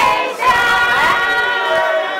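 A group of voices singing together, holding notes and sliding between them.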